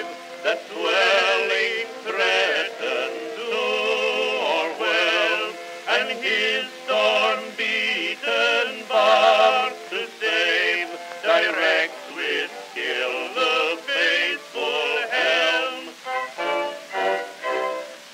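Playback of a 1910 Edison Amberol wax cylinder recording: a bass-baritone and tenor duet with accompaniment, sung with wavering vibrato. The sound is thin and has no deep bass, as is usual for acoustic-era recordings.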